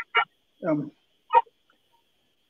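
A man laughing briefly in three short bursts, heard over a video-call connection.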